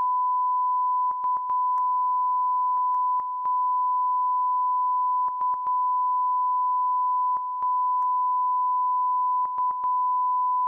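Broadcast line-up test tone sent with colour bars, a single steady high-pitched tone that marks the feed as off programme. It is broken by brief clicking dropouts that come in small clusters every couple of seconds.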